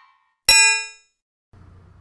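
A single bright, bell-like metallic ding about half a second in, ringing with many overtones and dying away within about half a second. A faint steady hum starts near the end.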